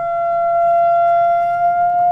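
A single high, steady tone played through the pyro board's loudspeaker, loud enough to be painful to the ears. The tone sets up a standing wave in the gas inside the board, so the flames stand tall at the antinodes.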